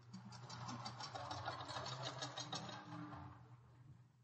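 Audience applause, faint on an old broadcast recording, swelling and then dying away near the end, over a steady low hum.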